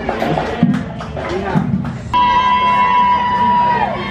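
Parade crowd talking and calling out. About two seconds in, music cuts in suddenly with one long held note.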